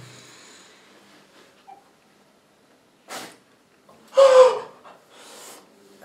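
A man's pained breathing after a wax strip is pulled from his skin: the end of his yell fades out, then a quick sharp breath about three seconds in, a louder gasp with a short falling cry about a second later, and a softer breath out.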